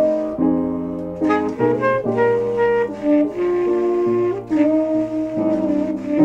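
Tenor saxophone playing a slow jazz ballad melody over piano accompaniment, the sax moving from note to note and holding one long note in the second half.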